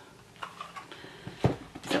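Handling noise from a Kodak Brownie 127 camera in its cardboard box being lowered and handled: a few soft knocks, the clearest about one and a half seconds in.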